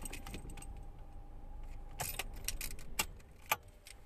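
Low steady rumble inside a car, with a run of sharp light clicks and metallic jingling in the second half.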